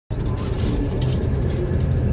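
Steady low rumble of a car driving on a sealed road, heard from inside the cabin: engine and tyre noise.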